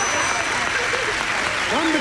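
Studio audience and contestants applauding a correct answer on the game board, with voices calling out over the clapping and a voice starting to speak near the end.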